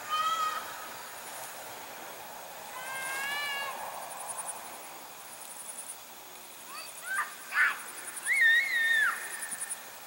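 Birds calling in the open: a short call right at the start, another about three seconds in, a few sharp chirps around seven seconds and a longer two-note whistle near the end. Under them, insects keep up a steady fast high pulsing.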